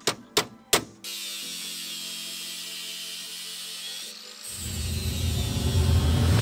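Three sharp metal knocks in the first second, then a steady power-tool whir. About four and a half seconds in, it gives way to a louder, rising grinding as an angle grinder cuts into metal.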